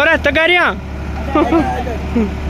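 A tractor engine running steadily, a low hum under a man's voice.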